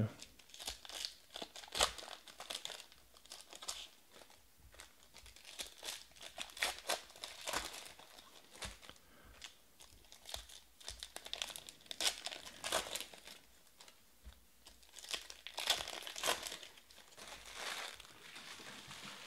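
Foil wrappers of Panini Select football card packs crinkling and tearing as packs are ripped open and the cards handled, in irregular spells of crackling.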